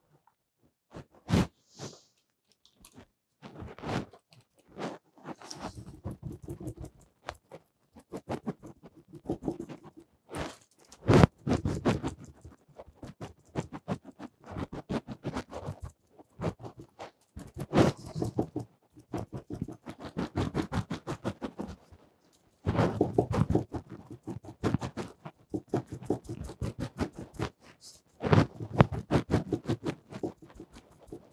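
A small piece of sponge pounced repeatedly on a canvas, dabbing on acrylic paint: quick runs of soft taps and light scratches in bursts with short pauses between. A couple of sharper knocks stand out, one just after the start and one about a third of the way through.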